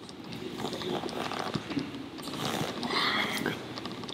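Grappling on a foam mat during a choke defence: bodies and rashguards rubbing and scuffing as the two men shift and struggle, with strained breathing. The scuffing is heaviest about two and a half to three and a half seconds in.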